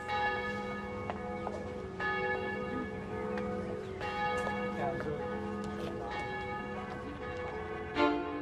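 Bells ringing, a fresh strike about once a second, each note ringing on over the last.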